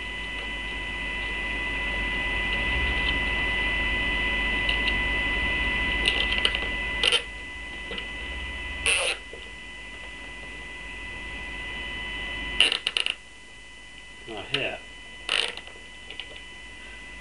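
Nylon cable ties being pulled tight through their ratchet heads around a plastic bottle, giving several short ratcheting clicks from about six seconds in. A steady electrical hum and whine runs underneath.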